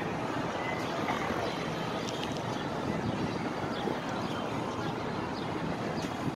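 Steady outdoor crowd ambience: a continuous rumbling hum of the surroundings with faint voices of people nearby mixed in.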